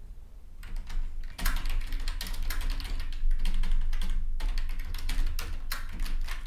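Typing on a computer keyboard: a quick, uneven run of key clicks that starts about half a second in, over a low steady hum.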